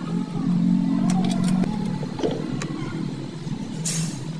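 A motor-vehicle engine running steadily, heard as a low drone that is strongest in the first second and a half. A few short light clicks come through it, about a second in, midway and near the end.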